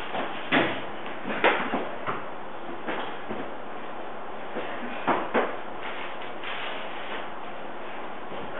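A few short knocks and bumps over steady background hiss: two in the first second and a half, and a close pair about five seconds in.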